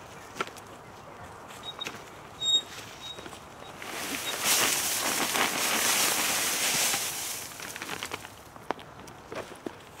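Dry brown compost material poured from a sack onto a compost pile in a pallet bin: a rustling, pattering pour about four seconds in that lasts around four seconds.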